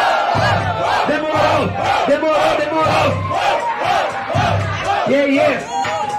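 A large crowd shouting together in rhythm, about three shouts a second, over a hip-hop beat with a thumping bass.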